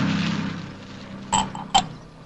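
An engine drone fades out. Then two sharp glass clinks, about half a second apart, ring briefly.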